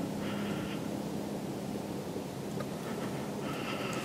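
Steady rushing wind noise over the camera microphone, with a low steady hum under it. Two brief hissy bursts come just after the start and again near the end.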